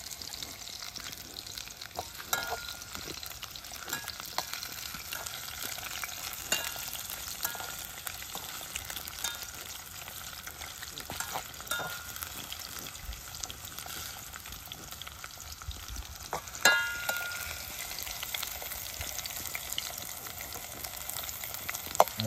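Potato wedges frying in hot oil in a metal pot, a steady sizzle. A knife clinks and scrapes against the pot now and then as the wedges are turned; the loudest clink, about three quarters of the way through, rings briefly.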